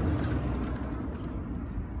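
Faint clicks of a key ring being handled and a key fitted into a motorcycle's seat lock, over a low, steady rumble.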